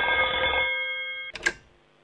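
A telephone ringing with a steady ring that fades out a little over a second in, followed by a short click as the incoming call is picked up.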